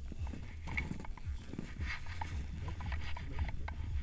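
Boots and skis crunching irregularly across snow during a tandem paraglider's takeoff run, over a steady low rumble of wind on the microphone.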